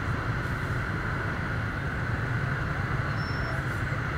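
Dense motorbike and scooter traffic at a crawl in a jam: many small engines idling and running at low speed together, a steady even sound with no single event standing out.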